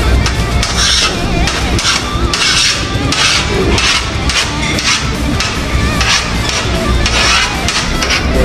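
Background music with a steady beat, over which a fork scrapes several times, irregularly, against a metal paella pan.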